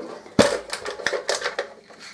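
Large paper guillotine cutting through a sheet of card: a sharp clack about half a second in as the blade comes down, followed by a run of lighter clicks and rattles.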